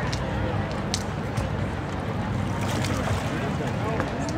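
Faint, distant voices of people talking over a steady low rumble, with a few light clicks.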